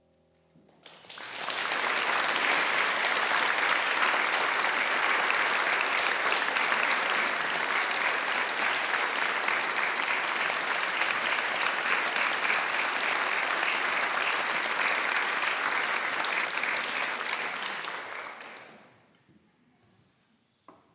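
Audience applauding at the end of a piano piece. The clapping starts about a second in, holds steady and fades out near the end.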